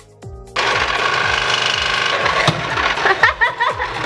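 Electric citrus juicer starting suddenly about half a second in as an orange half is pressed onto its reamer cone, then running loudly and steadily as it juices the orange.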